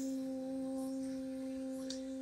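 A steady hum held at one unchanging pitch, with a fainter higher overtone, at moderate level.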